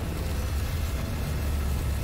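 Deep, steady rumbling hum of a science-fiction energy device, a glowing sphere being charged with ice power, as a sound effect.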